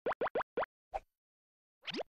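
Cartoon pop sound effects: four quick pops, each rising in pitch, a fifth about a second in, then a longer rising swoop near the end.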